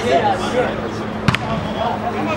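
A football kicked once, a single sharp thud a little past the middle, over players' unclear shouts and calls.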